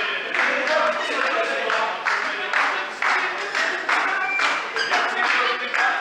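A group of people singing together with rhythmic clapping, about two beats a second, echoing in a large hall.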